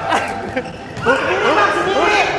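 Players' voices, calling and chattering over each other in a large hall, with a short knock in the first half-second.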